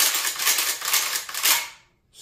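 Saiga 12-gauge semi-automatic shotgun's action being worked by hand: a quick run of metallic clacks and rattles over about a second and a half, stopping near the end.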